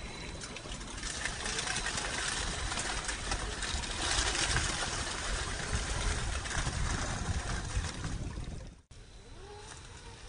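1/10-scale RC rock crawler driving over rock and through dry leaves, the leaves crackling and rustling under its tyres. The noise stops abruptly near the end, giving way to a quieter stretch with faint rising and falling tones.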